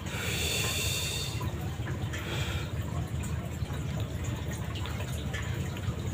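Aquarium top filter running: a steady low hum with water trickling and dripping back into the tank, and a brief higher hiss in the first second and a half.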